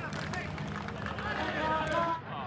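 Football match broadcast sound: voices calling over a steady stadium ambience.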